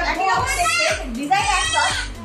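Children's voices chattering and calling out in a room.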